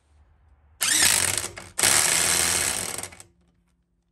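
Parkside 500 Nm electric impact wrench hammering on a car's wheel lug nut in two loud bursts of about a second each, with a short break between. The motor whines up at the start of the first burst and winds down after the second.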